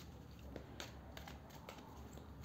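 Tarot cards being shuffled by hand: faint sliding and a few soft clicks of the cards.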